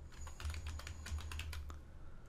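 Computer keyboard typing: a quick run of keystrokes that stops shortly before the end.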